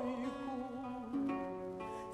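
Russian seven-string guitar playing a short plucked interlude. Its notes ring and decay, with new notes struck about a second in and again near the end. At the start a woman's held, wavering sung note is just ending.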